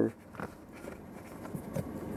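Faint handling sounds of a handheld OBD2 scanner's plug and cable being worked toward the diagnostic port under a car's dashboard, with a light tick about half a second in.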